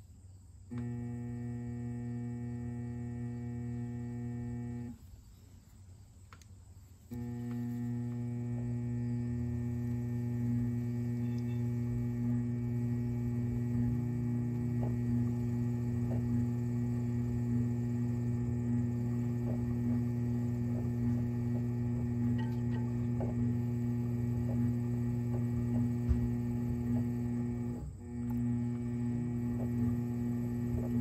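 Electric pottery wheel motor humming steadily while it spins. The hum starts about a second in, cuts out for about two seconds, then starts again and runs on, dipping briefly near the end.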